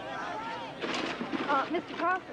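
People's voices calling out, with a short, sharp noisy burst about a second in.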